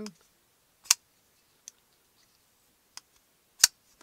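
Kubey KU342 flipper folding knife being worked open and shut by hand: two sharp clicks of the blade snapping into place, about a second in and near the end, with a couple of faint ticks between. The crisp snap is the sign of very well tuned detents.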